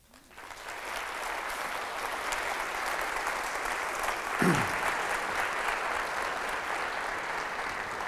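Audience applauding. The clapping builds over the first second and then holds steady, with one voice briefly calling out about halfway through.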